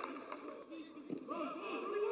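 Footballers shouting and calling to each other across the pitch, several voices overlapping, with no crowd noise.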